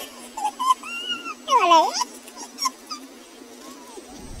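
Short, high whimpering cries that slide in pitch. The loudest one dips down and swoops back up about one and a half seconds in, and fainter ones follow.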